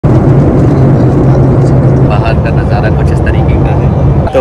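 Steady, loud drone of a jet airliner's engines in flight, heard from inside the cabin at a window seat, with a low hum under it. From about halfway in, a faint voice can be heard over the drone.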